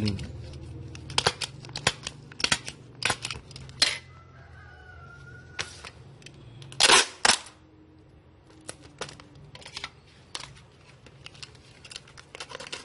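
Adhesive tape being pulled off a roll and torn while a package is taped shut: a series of short, sharp rips, with the longest and loudest about seven seconds in.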